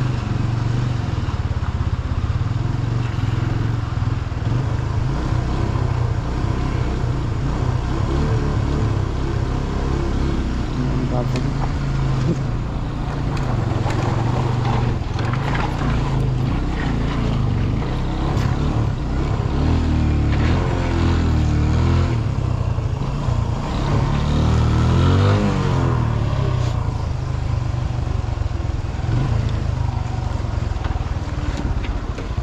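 Single-cylinder engine of a TVS Apache motorcycle running at low speed, with the revs rising and falling several times in the second half as it picks its way over a rocky stream bed.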